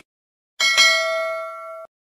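Notification-bell chime sound effect from a subscribe-button animation: one bell ding about half a second in, ringing for about a second and then cutting off suddenly.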